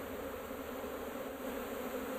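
A disturbed honey bee swarm buzzing in a steady hum; the bees are agitated.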